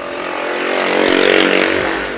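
A motor vehicle passing close by: its engine noise grows louder to a peak about halfway through, then fades.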